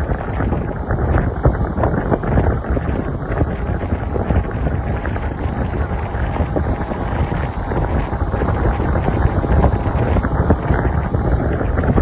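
Heavy wind buffeting the microphone of a moving vehicle, over a steady low rumble of engine and road noise.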